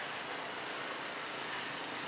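Steady outdoor background noise, an even hiss-like hum with no distinct events.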